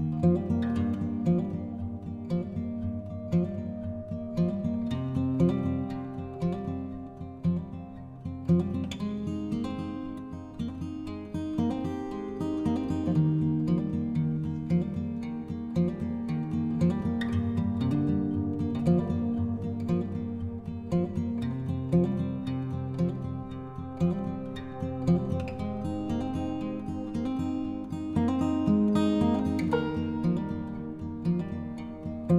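Background music on acoustic guitar: a steady run of plucked and strummed notes.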